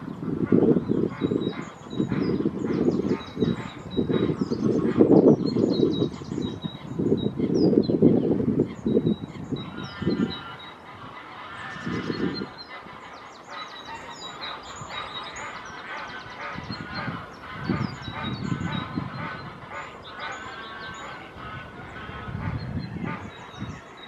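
Outdoor lake birdsong: small birds chirp high and thin throughout, while repeated honking waterbird calls sound in the middle range, mostly in the second half. Low rumbling bursts fill the first ten seconds or so.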